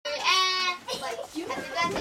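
A child's high-pitched, drawn-out cry lasting about half a second near the start, followed by children talking.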